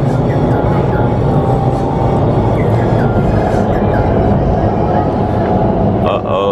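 Vertical wind tunnel running, its airflow a loud, steady rush heard through the tunnel's glass wall while a flyer is held aloft.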